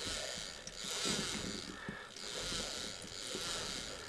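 Faint meshing of a small gear train turned by hand, a 3D-printed PETG gear running against metal gears and a worm, in soft repeating swells about once a second. The gears are being turned to check whether the plastic gear has sheared its keyway.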